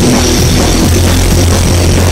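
Rock band playing loud: drum kit, electric bass and electric guitar, with a strong steady bass note underneath.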